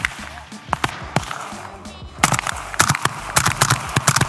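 Suppressed AK-pattern rifle firing a quick string of shots in the second half, after a few single sharp reports earlier on.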